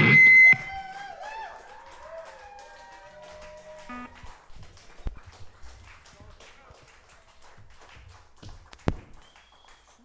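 A rock band's final loud chord, with guitars and drums, cuts off about half a second in. A few whoops and voices and scattered clapping from a small audience follow, with a single sharp pop near the end.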